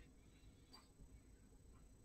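Near silence: faint room tone, with one brief faint tick about three quarters of a second in.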